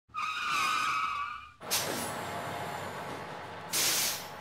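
Vehicle sound effects. Tires squeal with a wavering pitch for about a second and a half, then a sudden hit with a falling whoosh settles into a hiss, and a loud, bright hiss bursts in near the end.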